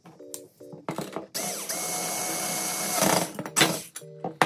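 Electric screwdriver driving a screw into the aluminium extrusion frame corner: its motor spins up about a second in and runs steadily for under two seconds, followed by a short sharp burst near the end.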